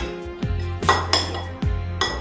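Metal spoon and fork clinking against ceramic plates and bowls while eating, with sharp clinks at the start and a couple more about a second in. Background music with a steady beat runs underneath.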